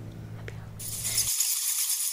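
A high, hissing, shaker-like rattle sound effect starts just under a second in and runs on steadily. Before it there is only faint room hum and a single small click.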